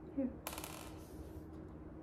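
A short hum-like voice sound, then a brief rattle of jelly beans shaken in a small cardboard box, about half a second in.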